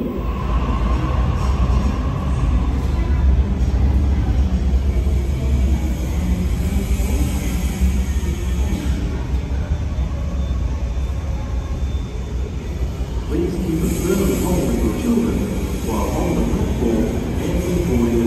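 Low, steady rumble of a Tangara suburban electric train running through the underground station tunnel as it approaches the platform. Voices are heard on the platform over the last few seconds.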